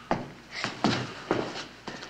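A series of short, sharp thumps, about two a second and unevenly spaced.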